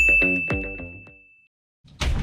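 An electronic ding sound effect: one bright, high ringing tone that fades out over about a second and a half, over the last few notes of background music. A short silence follows, and new music starts right at the end.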